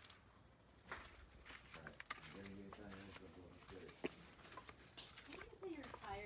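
Faint, distant voices over near silence, with a few light clicks.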